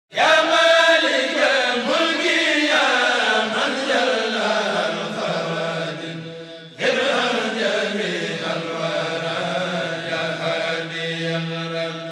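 Vocal chanting in long, sustained, sliding lines, in two phrases. The first fades away about six seconds in, and the second begins abruptly just before seven seconds over a steady low held note.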